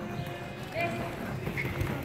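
Hoofbeats of a grey horse cantering on the soft sand footing of an indoor arena, dull thuds that get louder in the second half as it passes close.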